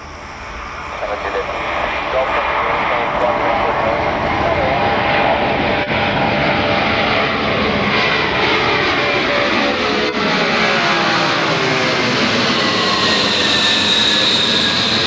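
Antonov An-124 Ruslan's four D-18T turbofan engines growing louder as the aircraft comes in low toward the listener. It then passes close overhead, and the engine whine falls steadily in pitch as it goes by.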